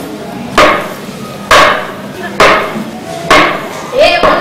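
Loud, hard percussive knocks, four evenly spaced strikes about once a second, each with a brief ringing tail.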